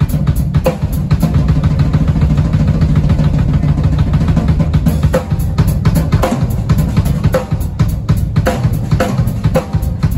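Drum kit played hard in a live band, with busy rolls and fills over a low bass line; from about five seconds in, sharp accented snare and tom hits land about once a second.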